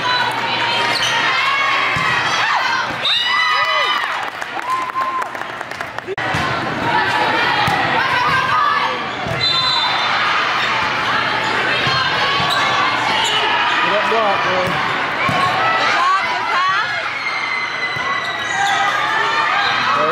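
Gym sounds of a girls' volleyball rally. Sneakers squeak on the hardwood court, the ball thuds off hands and arms now and then, and players and spectators call and shout.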